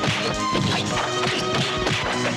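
Film fight-scene soundtrack: repeated dubbed punch and crash sound effects over a busy background score.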